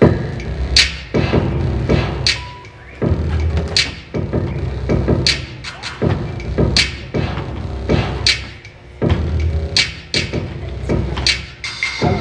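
Hip-hop beat starting up: deep kick-drum thumps and bass with a sharp snare crack about every one and a half seconds, a steady slow tempo, setting up a rap.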